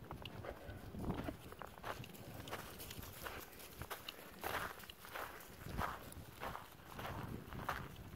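Footsteps on a rocky dirt trail, about two steps a second, faint and uneven.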